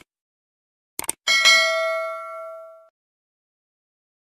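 Subscribe-button animation sound effect: a quick double mouse click about a second in, followed by a bell-like notification ding that rings out and fades away over about a second and a half.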